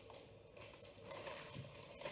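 Nearly silent, with faint rustling and handling of a sheet of greaseproof paper as butter is laid onto pastry.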